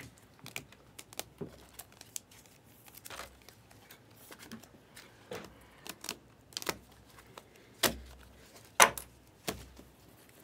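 Trading-card pack and cards being handled: scattered crinkles and light clicks, with a few sharper clicks in the last two seconds.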